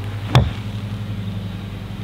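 A golf wedge striking a ball off a hitting mat: one sharp crack about a third of a second in, over a steady low hum.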